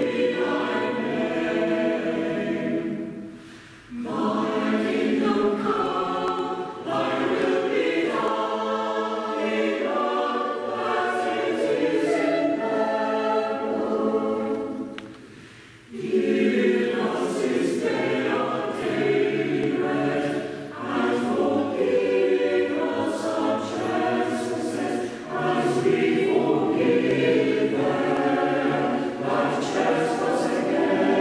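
Church choir singing in parts, pausing briefly between phrases a few seconds in and again about halfway through.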